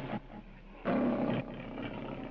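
The MGM logo's lion roaring: the end of one roar, then a second short roar about a second in.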